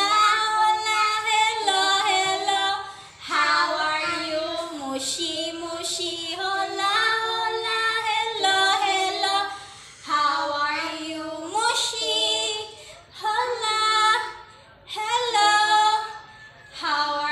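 A woman and a girl singing a children's song together in phrases, with short breaks for breath.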